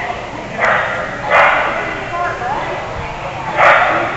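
A dog barking three times during an agility run, short loud barks about a second in and near the end, over background chatter of voices.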